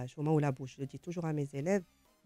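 Speech only: a woman talking in a radio studio conversation.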